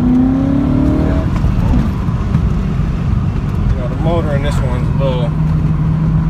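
BMW E39 M5's 4.9-litre naturally aspirated V8, straight-piped, revs climbing over about the first second, then running at a steady drone.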